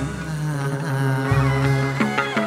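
Chầu văn ritual music from a small live band led by the đàn nguyệt (moon lute), with long held notes and a change of note about a second in.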